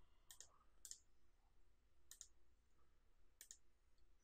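Faint, scattered clicks of a computer mouse and keyboard, about four spread over a few seconds, against near silence.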